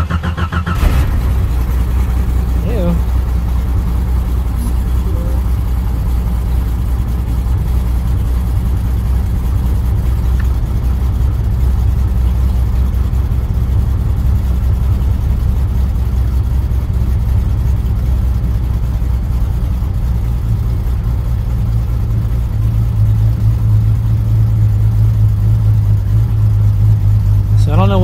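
1989 Jeep Cherokee's 4.6-litre stroker inline-six starting up in the first second, then idling steadily, heard from inside the cab. The idle gets slightly louder in the last few seconds.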